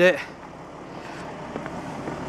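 A word of speech, then steady, even outdoor background noise with no distinct event in it.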